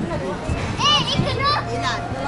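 Background voices of park visitors talking, with children's voices and a brief high-pitched child's call about a second in.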